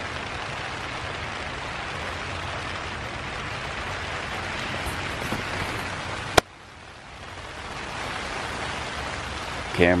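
Steady rain falling on the fabric of a tipi hot tent, heard from inside. About six seconds in a sharp click cuts in, and after it the rain is much quieter and then builds up again.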